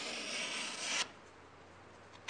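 Sheet of paper being sliced through by a chip carving knife blade: a dry papery hiss that cuts off about a second in.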